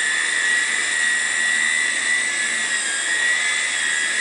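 Small Hirobo coaxial-rotor RC helicopter hovering: a steady high-pitched whine from its electric motors with the whir of the twin rotors, holding level with only slight wavers in pitch.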